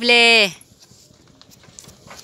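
A man's drawn-out call to the animal, then the faint, soft hoofsteps of a water buffalo walking on a sandy dirt track as it pulls a wooden cart.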